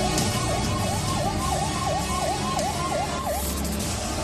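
Ambulance siren in a fast yelp: quick falling-and-rising sweeps, about three to four a second, that stop near the end.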